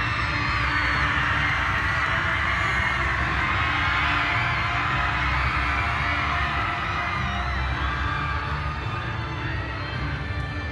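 Live show music played loudly through an arena sound system, with a heavy pulsing bass, under an audience cheering. The cheering eases a little near the end.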